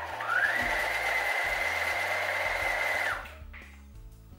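Electric sewing machine stitching fabric: its motor whine rises quickly as it starts, runs at a steady speed for about three seconds, then stops suddenly.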